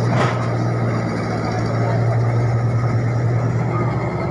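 Komatsu crawler excavator's diesel engine running as it works, a steady low drone, with a brief knock just after the start.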